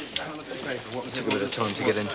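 A young man's voice talking, the words unclear.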